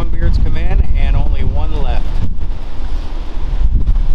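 Wind buffeting the camera microphone, a loud steady low rumble, with a man's voice over it for about the first two seconds.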